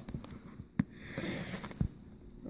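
Handling noise from packaging being picked up: a sharp click, then a short rustle, then a dull knock near the end.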